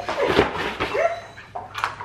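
Dog whining, two short cries, with a sharp click near the end.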